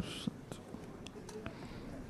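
Faint scattered clicks and taps of a laptop and its cable being handled, after a brief whispered hiss at the start.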